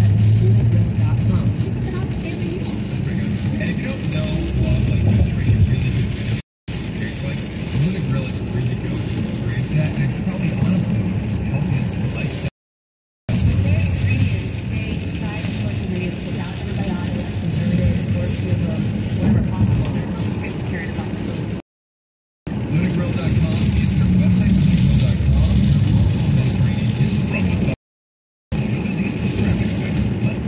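Car cabin noise while driving on a rain-soaked freeway: a steady low engine and tyre hum. The sound cuts out completely four times, each for less than a second.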